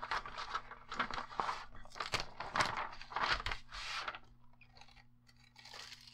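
Paper and deco foil sheet rustling and crinkling as a folded paper carrier is opened and the foil film is peeled off a freshly laminated tag. The rustling is busiest for about the first four seconds, then thins to a few soft crackles.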